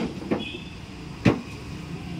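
Two knocks over steady background noise: a soft one near the start and a sharp, louder one about a second and a quarter in.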